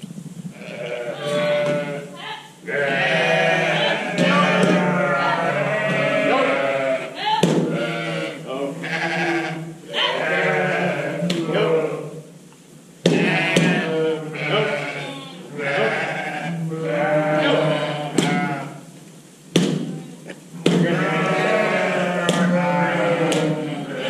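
A flock of sheep and lambs bleating loudly and almost continuously, many calls overlapping, as the flock is pushed together to sort out the lambs. A few sharp knocks sound among the calls.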